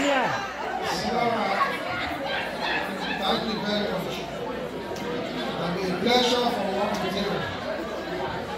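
Many people talking at once in a large hall: steady, overlapping crowd chatter with no single clear voice.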